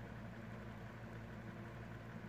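Electric fan running steadily, a faint even hum.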